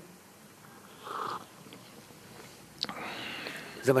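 A man taking a short sip from a mug, heard as a brief slurp about a second in. A single click follows near the three-second mark, then a breathy noise just before he speaks again.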